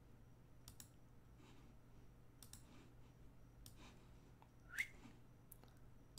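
Near silence with a few faint computer mouse clicks over a low steady hum, and one brief rising sound near the end.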